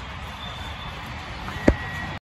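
Steady low outdoor rumble, with one sharp knock a little before the end.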